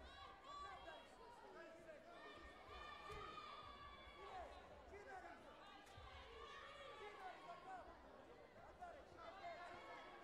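Faint, overlapping chatter of many voices from a spectator crowd in a sports hall, with no single voice standing out.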